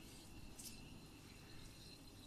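Faint fizzing of a small piece of sodium metal reacting with water in a glass beaker, giving off hydrogen as the reaction gets going, with a brief slightly louder hiss about half a second in.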